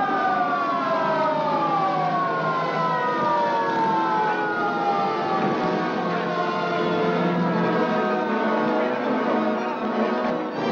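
Police sirens wailing and slowly falling in pitch over several seconds, over orchestral film music.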